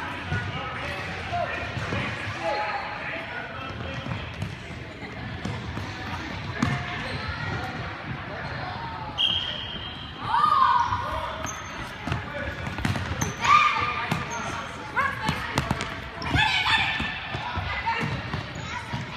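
Futsal ball being kicked and bouncing on a hardwood gym floor: irregular thuds, with players and spectators calling out in a large indoor gym.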